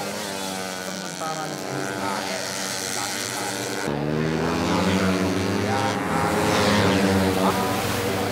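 Racing engines of 130 cc four-stroke underbone motorcycles at high revs as the bikes pass. About four seconds in, the sound changes abruptly to a fuller, lower note as several bikes come on together.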